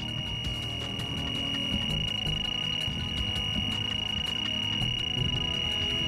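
Electronic carp bite alarm sounding one unbroken high tone, the sign of a run as a carp takes line, over background music.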